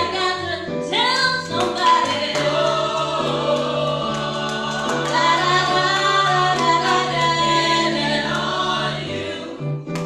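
A small church praise team singing a gospel song together, with instrumental accompaniment holding sustained low notes beneath the voices.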